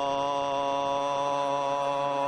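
A man's voice singing one steady held note, his rendition of the note A, which the host then mocks as showing a poor ear for pitch.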